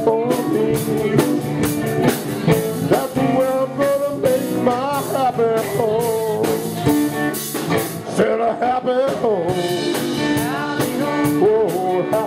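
Live rock band playing an instrumental stretch: an electric guitar lead with bending notes over a steady drum-kit beat.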